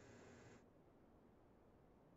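Near silence: faint room tone that drops away about half a second in.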